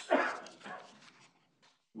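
A person coughing: one loud cough at the start, then a softer second cough about half a second later.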